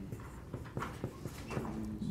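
Faint, irregular taps and scratches of a pen writing on a board, over low room hum.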